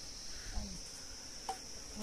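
Insects chirring in a steady, unbroken high-pitched drone, with a brief faint voice about half a second in and a small click later on.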